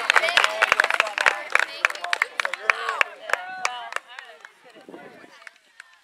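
A group of teenage girls chattering and calling out, with scattered sharp claps, dying down about four seconds in.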